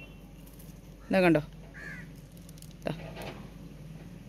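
A short vocal syllable just after a second in, with faint curved bird calls around it and a click near the end.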